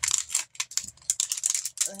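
Plastic cosmetic packaging crinkling and crackling in the hands as it is handled and worked open, a quick irregular run of small clicks and crackles.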